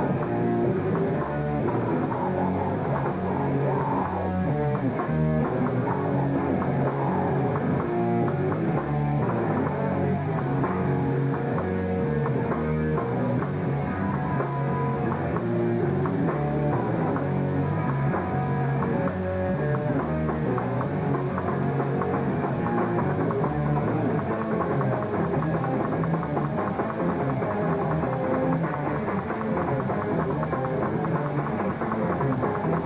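Hardcore punk band playing live: distorted electric guitars, bass and a drum kit, loud and without a break.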